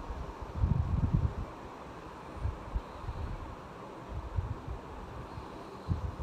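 Soft, irregular low thumps and rustles as a spoon scrapes fried tempering out of a small steel pan onto cooked rice, over a steady hiss.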